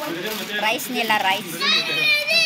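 A young child's high-pitched voice chattering, with other voices around it.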